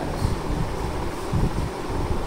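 Steady low background rumble of room noise, with no clear event standing out.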